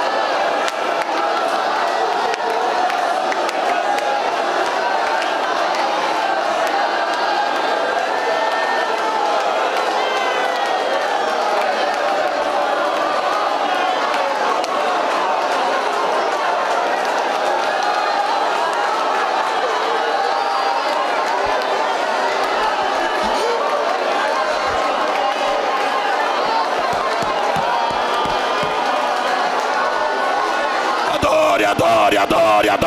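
A large congregation praying aloud all at once, many voices overlapping in a steady, unbroken din of fervent prayer.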